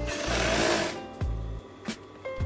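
Brother industrial sewing machine stitching in a short burst over about the first second, with background music.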